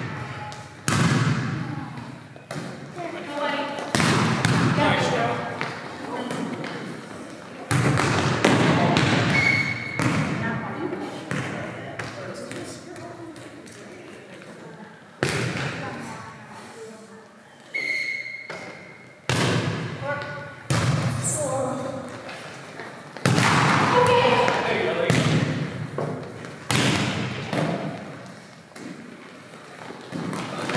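Volleyball being struck and bouncing in a gymnasium: a string of sharp smacks every few seconds, each ringing in the hall's echo, with players' voices calling between hits.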